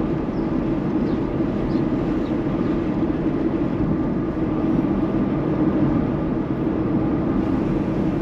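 Steady road and engine noise heard inside a moving car's cabin: an even low rumble at a constant level.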